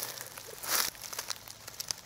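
Dry leaf litter rustling and crackling, with a short burst of rustling just under a second in and a few small clicks.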